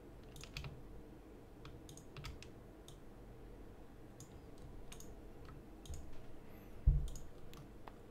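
Computer mouse clicking, a dozen or so scattered clicks at an irregular pace over a faint steady hum, with one dull low thump about seven seconds in.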